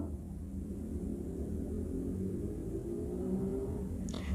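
Faint, steady low rumble of a running motor in the background, with a light hum in it.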